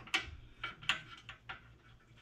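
A handful of faint, sharp clicks and light ticks at uneven intervals, from hand work at the cylinder head of a Briggs & Stratton Intek single-cylinder engine.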